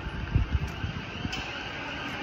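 City street ambience: a steady background hubbub of a busy pedestrian street, with wind buffeting the microphone about half a second in.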